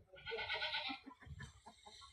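A farm animal's call with a rapid quaver, about a second long and near the start, over soft rustling and tugging as weeds are pulled up by hand.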